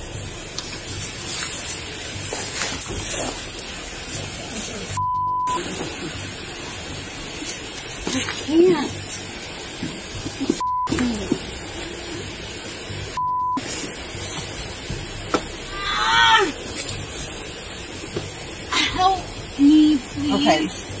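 Three steady, high-pitched censor bleeps cut into the audio, each replacing all other sound: a longer one about five seconds in and two short ones later on. Between them, a woman's voice and handling noise from the body camera.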